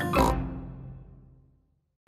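The closing chord of a cartoon theme tune with a pig's oink just after the start. It rings out and fades to silence about one and a half seconds in.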